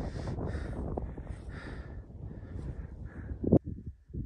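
Wind rumbling on the microphone in uneven gusts, with rustling bursts, ending in a sharp click about three and a half seconds in, after which it goes much quieter.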